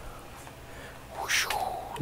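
Faint background hiss, then about a second and a half in a short breathy sound from a person, without a clear pitch.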